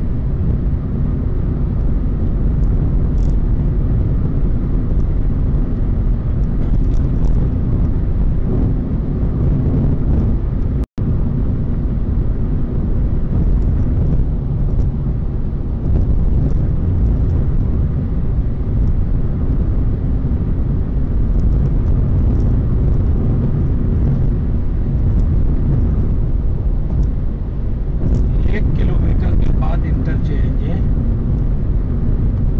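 Steady low road and engine rumble of a car cruising at expressway speed on a concrete road surface, heard from inside the cabin. The sound cuts out for an instant about eleven seconds in.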